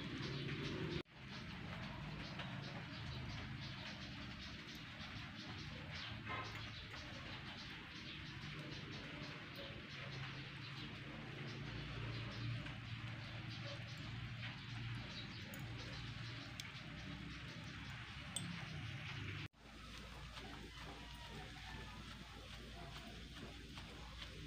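Tilapia grilling in wire baskets over charcoal: a steady faint hiss with scattered small crackles from the fish and the coals. The sound drops out abruptly twice, about a second in and again about three-quarters of the way through.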